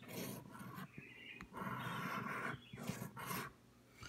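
A scratch-off lottery ticket being scratched, its coating scraped away in three stroke runs with short pauses between them.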